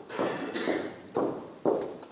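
Footsteps on a wooden parquet floor in a reverberant hall, about two steps a second, each a sharp knock that dies away briefly.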